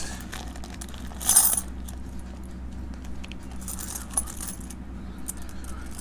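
Loose 90% silver US coins clinking and clattering as they are tipped from a plastic bag and shuffled by hand. The loudest clatter comes about a second and a half in, and lighter clinks follow a few seconds later.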